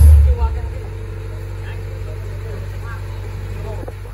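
A deep low thump right at the start, then a steady low hum under faint, scattered voices.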